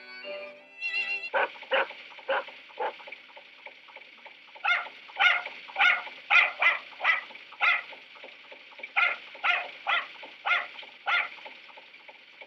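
A dog barking over and over in short runs of sharp barks, about twenty in all, with two brief pauses. The sound is thin, as on an old film soundtrack. The last notes of a violin play in the first second.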